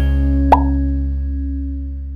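The closing chord of an intro music jingle ringing out and slowly fading, with a single short pop sound effect about half a second in.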